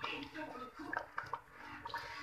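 Wooden chopsticks stirring in a large pot of simmering rice porridge with fish, with about half a dozen light clicks of the chopsticks knocking as they move the fish.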